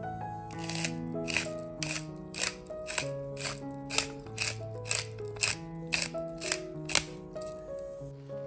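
Hand-turned pepper mill grinding black pepper: about a dozen short grinding strokes, roughly two a second, stopping near the end, over background music.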